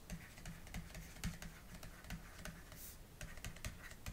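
Faint, irregular ticks and light scratches of a stylus on a pen tablet as words are handwritten.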